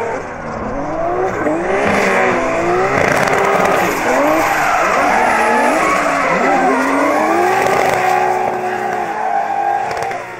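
Two drift cars sliding side by side, their engines revving hard and rising and falling in pitch as the throttle is worked. Tyres squeal and scrub under wheelspin throughout.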